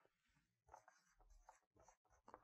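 Faint squeaks and scratches of a dry-erase marker writing a word on a whiteboard, in a few short strokes.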